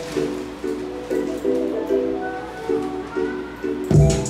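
Instrumental beat playing back: a plucked-string melody repeating in short chord notes, a few a second. A low hit lands right at the end.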